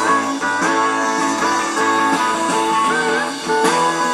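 A rock band playing live without vocals: electric guitars and drums, with a pedal steel guitar adding notes that slide in pitch.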